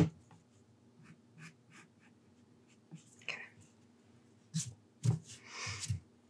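Faint handling sounds of a pencil and hands over a sheet of drawing paper: scattered light taps and clicks, with a short rustle near the end as the pencil is brought back to the page.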